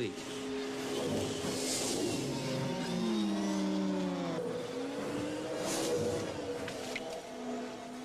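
Film sound effects of speeder bikes: layered, pitched engine whines that glide downward in pitch as they pass about three to four seconds in, with brief whooshes.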